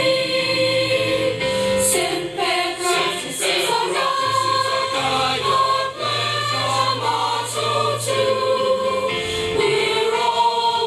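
A choir singing, with long held notes.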